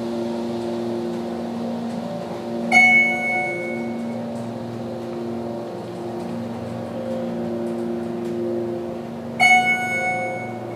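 Schindler hydraulic elevator travelling upward, giving a steady hum from its pump and ride. An electronic floor chime rings twice, about three seconds in and again near the end, as the car passes and reaches floors.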